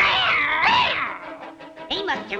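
Cartoon cat's cry, a wavering yowl that starts suddenly and fades out after about a second and a half, over background music.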